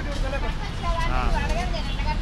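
Voices talking over a steady low rumble of road traffic.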